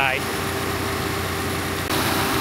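Subaru Crosstrek's flat-four engine idling under the open hood with the air conditioning running on full: a steady hum with a constant tone and an even hiss. The sound shifts abruptly just before the end.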